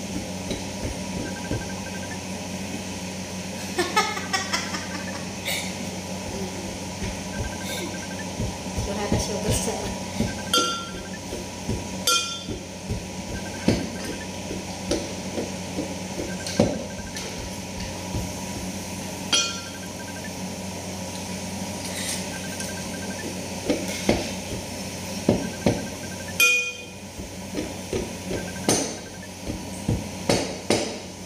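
Wooden pestle pounding inside a stainless steel pot: irregular knocks every second or two, each with a short metallic clink.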